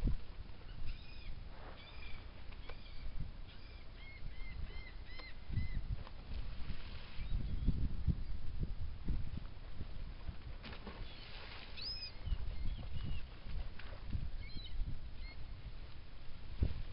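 Birds calling: short, arched chirping notes in quick runs of a few, heard several times, over an irregular low rumble.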